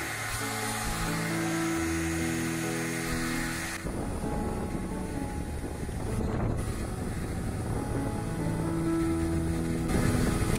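Background music with long held notes over a Koizumi hair dryer blowing steadily on small plastic cups. About four seconds in, the dryer's hiss loses its high edge and turns to a lower rush.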